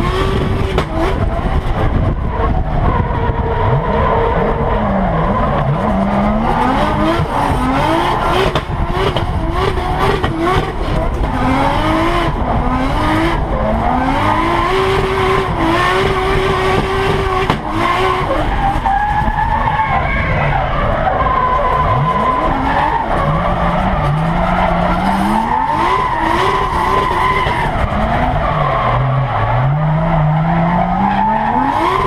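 800 hp Nissan S15 Silvia drift car heard from inside the cabin, its engine revving hard, the pitch climbing and dropping again and again as it is driven sideways. Tyres are skidding and squealing throughout.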